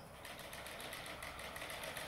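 Remote-control toy car's small electric motor running as it drives over the grass, faint and steady.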